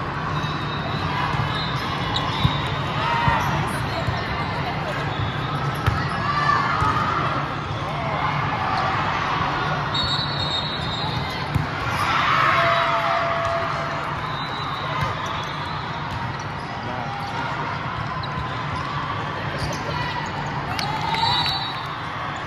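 Indoor volleyball play: several sharp hits of the ball off hands and forearms, with short shoe squeaks on the court. These come over a steady background of voices and hum in a large, echoing hall.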